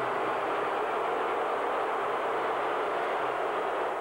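Large stadium crowd booing, a loud steady mass of voices with no break.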